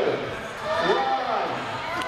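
High-pitched shouting voices of spectators and children, drawn-out calls rising and falling about once a second.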